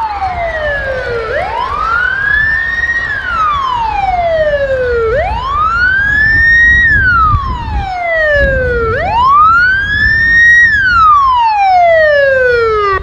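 Wailing siren of a UAZ rescue-service van, in slow up-and-down cycles: each climbs for under two seconds, holds briefly at the top and slides back down for about two seconds, about three cycles in all. A low rumble runs underneath.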